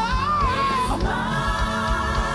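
Gospel choir singing held notes with vibrato over a live band with a steady low beat; the voices move to a new sustained chord about a second in.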